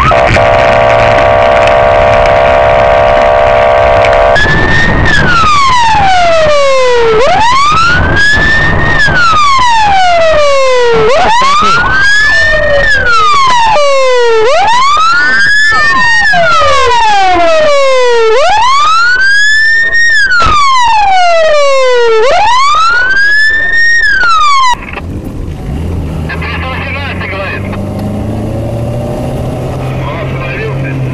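Police car siren, loud: a steady, horn-like blare for about four seconds, then a slow wail rising and falling about every three seconds. The siren cuts off suddenly about 25 seconds in.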